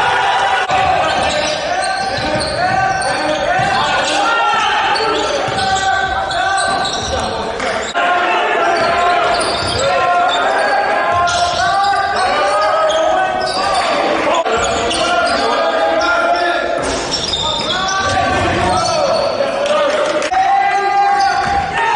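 Live game sound in a gymnasium: voices calling out in a large, echoing hall while a basketball bounces on the hardwood court.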